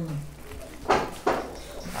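Metallised plastic gift wrap crinkling in two short bursts about a second in as a parcel is being unwrapped by hand, after a brief hummed voice at the very start.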